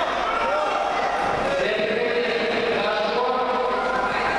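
Crowd of spectators in a large hall shouting and cheering together, many voices overlapping, in reaction to a judo throw that has just scored ippon.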